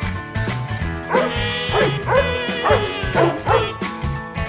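Background music, with a dog barking about six times in quick succession from about a second in.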